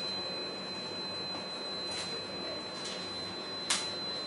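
Quiet room noise with a steady high-pitched electronic whine, and a couple of faint marker strokes on a whiteboard about two and three seconds in, followed by a sharp click near the end.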